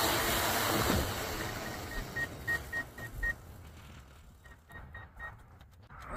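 A loud rushing noise that dies away over about three seconds, with two runs of short, evenly spaced high electronic beeps, about three a second.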